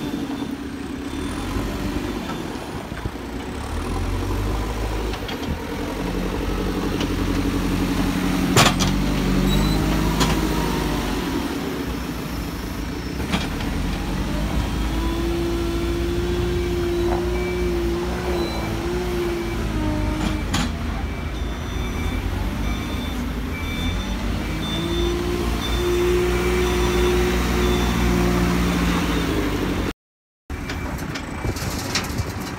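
JCB 3CX backhoe loader's diesel engine working under load, its revs rising and falling repeatedly as it lifts and moves the bucket. A sharp knock stands out about eight and a half seconds in.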